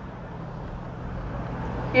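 Urban road traffic: a steady rumble of passing vehicles that swells slightly near the end.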